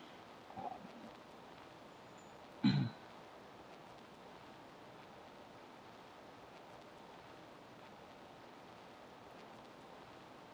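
Near silence: faint steady room tone, broken just under three seconds in by one short low noise.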